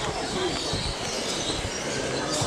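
Busy outdoor crowd ambience: the background chatter of many visitors mixed with a steady low rumbling noise.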